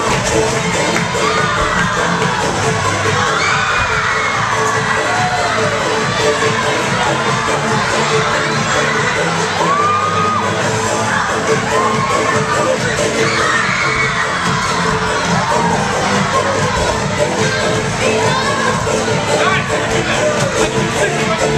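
A large audience of young schoolchildren shouting and cheering without a break, many high voices overlapping.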